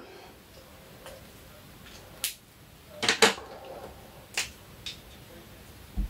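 A few light clicks and taps of plastic felt-tip pens being handled on a table, with the loudest pair of clicks about three seconds in.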